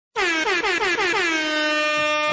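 A loud, horn-like sound-effect drop played after a rating is announced: one tone with a wavering warble that slides down in pitch for about a second, then holds steady.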